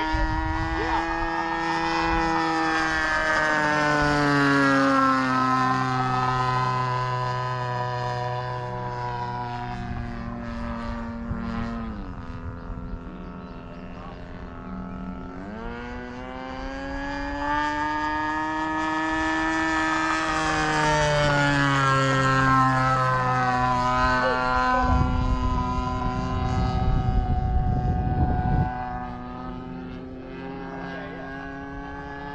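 Radio-controlled model T-28 Trojan flying passes, its engine and propeller giving a steady pitched note. The pitch drops as the plane goes by about 5 and 12 seconds in, climbs as it comes back around 15 seconds, and drops again near 23 seconds. A low rumble comes in near the end.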